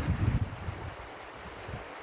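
Wind gusting on the microphone for about the first half second, then a steady rush of a flowing river.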